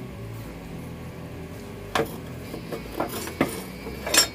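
Steel tongs and quenched knife blades clinking against each other and the workbench. There is one sharp metal clink about halfway through and a few lighter knocks near the end, over a low steady hum.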